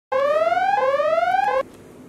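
Electronic whooping alarm tone: two rising sweeps of about two-thirds of a second each, then the start of a third that cuts off suddenly about one and a half seconds in.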